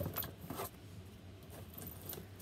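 Faint rustling with a few light clicks and knocks in the first second: grooming brushes being rummaged through and picked up.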